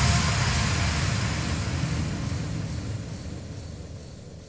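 Outro tail of an electronic trance track: a rumbling noise sweep with no beat, fading out steadily.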